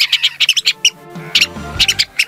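Mouse squeaks: short, high-pitched squeaks in quick clusters over background music.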